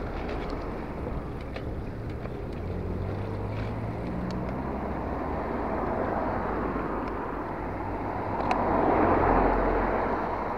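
Cars driving past in road traffic, engines and tyres running, with a steady engine hum in the first half and one car passing louder near the end.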